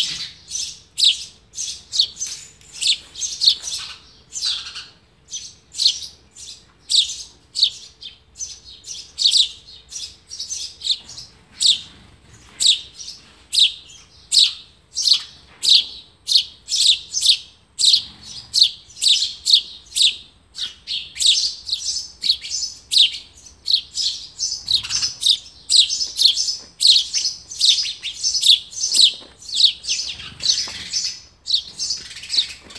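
House sparrow nestlings close to fledging, chirping over and over from the nest. The short, high chirps come at about two to three a second and grow denser and louder over the last third.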